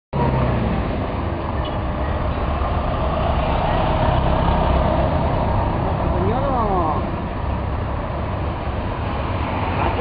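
Road traffic: cars driving past close by, a steady engine and tyre rumble. About six seconds in, a brief rising-and-falling vocal sound rises above it.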